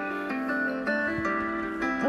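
Soft background music of plucked acoustic guitar, a few notes changing one after another.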